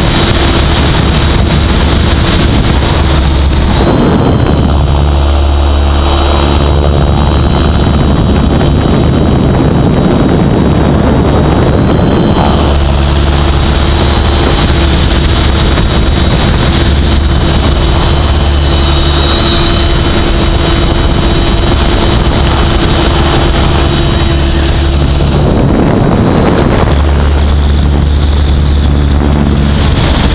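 Mikado Logo 550 SE electric radio-controlled helicopter in flight, heard from a camera on its tail boom: a loud, steady buzz of main and tail rotors with motor whine. The sound swells twice into a broader rush of air, about four seconds in and again near the end.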